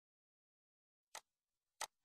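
Near silence, broken by two short, faint clicks about two-thirds of a second apart.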